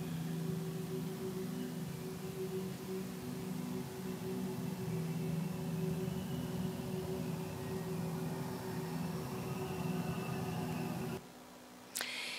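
Ethereal ambient drone from the composed soundtrack of a black hole art installation: a few sustained low tones over a soft hiss, cutting off abruptly about eleven seconds in.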